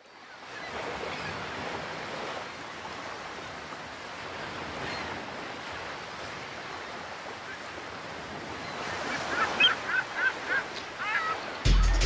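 Surf washing on a shore, a steady rush that fades in at the start. Near the end gulls call several times in quick succession, and just before the end a musical beat with a bass comes in.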